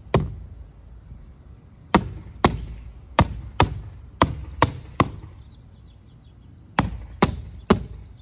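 A bare tree branch struck against a stretched painted canvas, about eleven sharp slaps: one at the start, a quick run of seven about two to five seconds in, then three more near the end.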